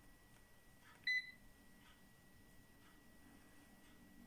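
A single short electronic beep from the Tefal Easy Fry & Grill air fryer's touch control panel about a second in, as the timer button is pressed and held to raise the cooking time. Otherwise quiet.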